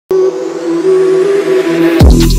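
Intro sound effect that starts suddenly: a loud held low tone under a hiss that rises steadily in pitch, building up to the channel's intro music.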